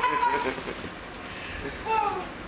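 A woman's laughter trails off in a held high note, then a short falling vocal squeal comes near the end, over steady background noise.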